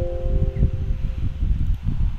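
Windows warning chime: a short chord that fades out within the first second, sounding as the confirmation dialog pops up. A single click follows about half a second in, over a steady low rumble of microphone background noise.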